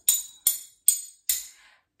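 A metal fork and spoon tapped together in a steady beat, four bright clinks about 0.4 s apart, each ringing briefly.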